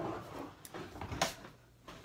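A few light knocks and clatters from someone handling things in a kitchen. The sharpest knock comes a little past the middle, and it goes quiet shortly before the end.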